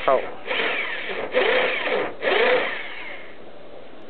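Electric hand drill boring into a part in three short bursts, the motor whine rising and falling with each, the last dying away after about three seconds.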